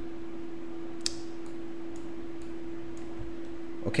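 A few sharp computer mouse clicks, the clearest about a second in, while drawing freehand strokes with the mouse, over a steady low electrical hum.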